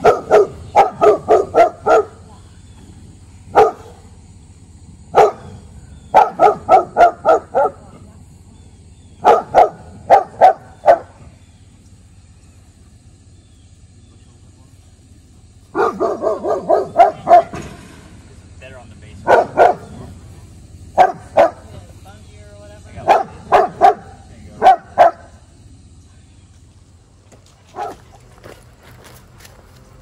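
A young boxer barking in volleys of several quick barks, with pauses of a few seconds between volleys. The barking is his fear-reactive response to unfamiliar people.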